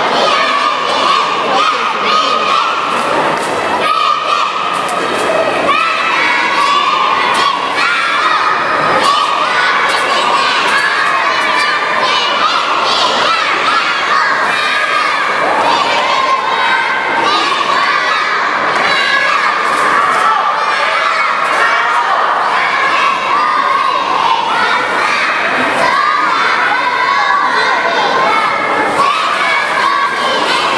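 Young girls shouting a cheer chant together, loud and continuous, with a crowd cheering along.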